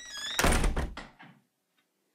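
A door's hinges creaking, then the door shutting with a loud, heavy thud about half a second in.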